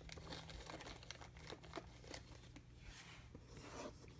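Faint crinkling and scattered light ticks of baseball cards being handled and sorted between the fingers, over a steady low hum.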